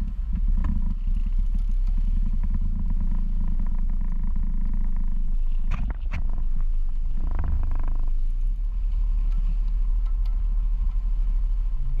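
Steady low rumble of a small skiff on choppy water, with wind buffeting the microphone and water against the hull, and a brief rush of splashing about seven seconds in.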